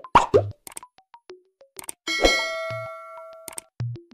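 Cartoon sound effects for an animated logo and subscribe outro: a few sharp hits, then a run of short pops and plops, then a bright bell-like ding about two seconds in that rings on and fades. Another hit comes just before the end.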